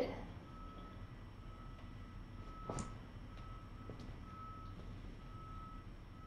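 Faint electronic beeping at one steady pitch, coming on and off irregularly. A single sharp click sounds a little under three seconds in.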